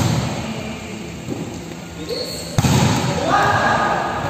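A volleyball struck hard by a player's arms or hands twice, about two and a half seconds apart, each hit ringing in a large gym hall. A player's shout follows the second hit.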